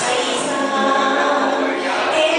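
A woman singing into a microphone with musical accompaniment, holding sustained notes.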